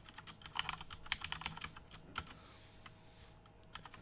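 Typing on a computer keyboard: a quick run of keystrokes over the first two seconds, then a few scattered key presses.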